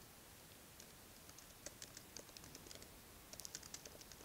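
Faint typing on a computer keyboard: scattered key clicks start about a second in, followed by a quick run of keystrokes near the end.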